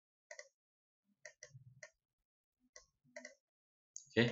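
Computer mouse clicking: about seven faint, sharp clicks at uneven intervals, some in quick pairs.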